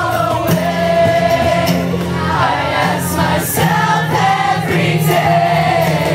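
Live acoustic rock song: several voices singing together over strummed acoustic guitar chords and a cajon beat.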